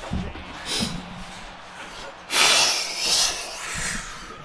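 A person's loud exhale, about a second long, starting about two and a half seconds in, with a shorter, softer breath near one second.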